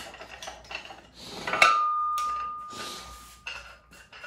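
Steel gym equipment being handled on a power rack: a few light metal clinks, then a sharp clang about one and a half seconds in that rings on as one steady tone for nearly two seconds.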